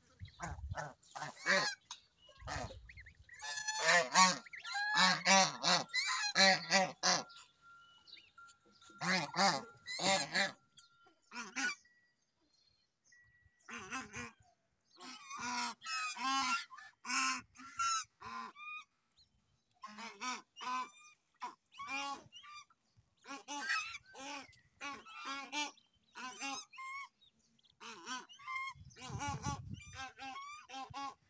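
White domestic geese calling in repeated bursts of short honks, mixed with the high peeping of their goslings. The calls break off for a couple of seconds about twelve seconds in.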